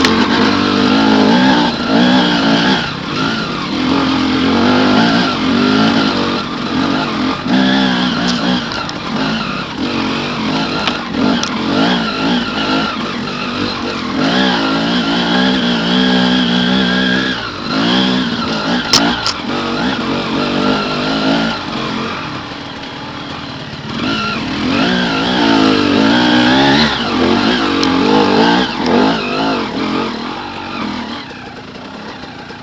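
Enduro motorcycle engine being ridden hard off-road, its pitch rising and falling again and again with the throttle and gear changes. It eases off near the end.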